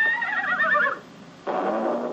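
Cartoon horse whinny from an old animated soundtrack: a rising call that breaks into a fast warble and stops about a second in. About half a second later comes a sudden thud with a low note. The sound is played through a computer's speakers and re-recorded in the room.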